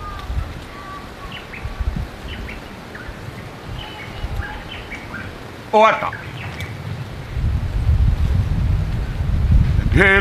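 Small birds chirping faintly in short scattered notes, with a brief call from a voice about six seconds in and a low rumble building near the end.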